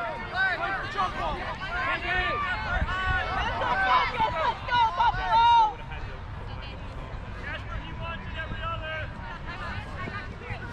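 Several voices shouting and calling over one another, at a distance, as ultimate frisbee players and sideline teammates call out during a point. After about five and a half seconds the shouting stops and only faint calls remain.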